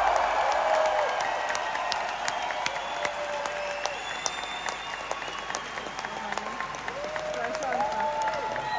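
Concert crowd applauding and cheering as a song ends, dense clapping with long, high cries and whistles held over it. The last of the music dies away at the start, and the applause slowly eases off.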